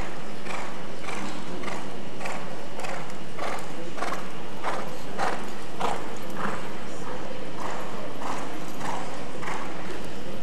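Hoofbeats of Lipizzaner horses trotting on the arena's sand footing, an even beat of a little under two falls a second over a steady background noise.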